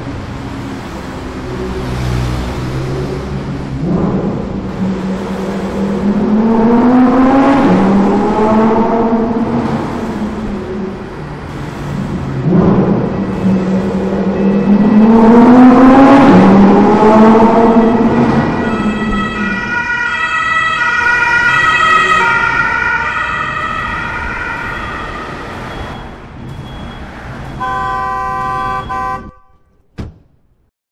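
A loud siren wail that rises and falls slowly in pitch, twice, each rise and fall lasting several seconds. From about two-thirds of the way in it gives way to sustained organ-like chord tones, which cut off just before the end.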